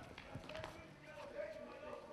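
Faint footsteps of a group of people walking together on pavement, with murmuring voices in the background.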